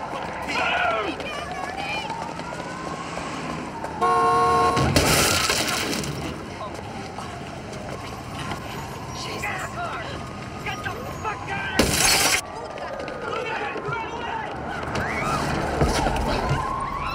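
A car horn blares for about a second, followed at once by a loud crash as the car strikes a man running into the street. A second loud bang comes about twelve seconds in, and shouting runs through much of the scene.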